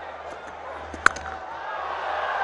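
Cricket bat striking the ball once: a single sharp crack about halfway through, over a steady crowd murmur.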